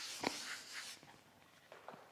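Felt chalkboard duster rubbing across a chalkboard, erasing, with a sharp knock about a quarter second in; the rubbing stops about a second in.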